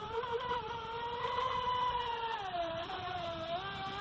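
Feilun FT011 RC speedboat's brushless motor whining steadily as the boat runs across the water. The pitch sags about two and a half seconds in, then climbs back.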